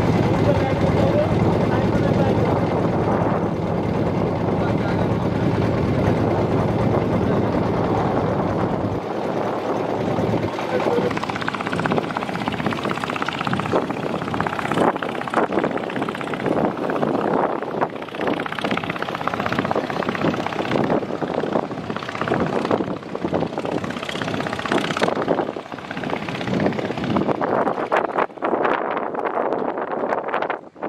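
Small river boat's engine running steadily with a low drone; about nine seconds in it drops away, leaving an uneven rushing outdoor noise.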